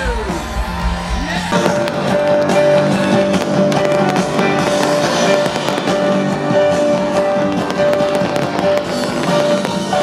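Live rock music with piano from a large stage sound system, with fireworks going off over it: a dense run of sharp pops and crackles starting about a second and a half in.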